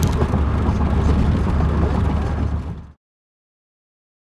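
Road and engine noise inside a Pontiac Fiero's cabin at highway speed: a steady low rumble that fades out quickly about three seconds in.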